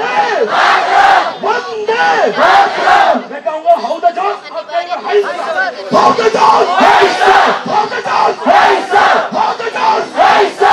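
Raised, shouting voices of a protest crowd, continuous and loud, mixed with a woman speaking.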